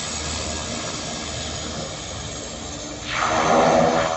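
Beechcraft C90 King Air's twin PT6A turboprop engines running as the aircraft taxis away: a steady turbine whine with propeller noise, swelling louder for about a second near the end.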